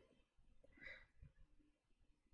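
Near silence: room tone, with one faint soft sound about a second in.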